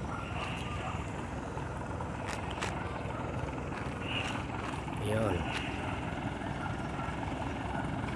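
Steady low rumble of outdoor background noise, with a faint voice heard briefly about five seconds in.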